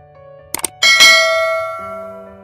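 Subscribe-button sound effect: two quick mouse-style clicks, then a bright notification bell chime that dings twice and rings out slowly, over faint background music.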